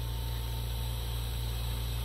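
Steady low hum with a faint, even hiss from a running lampworking torch setup.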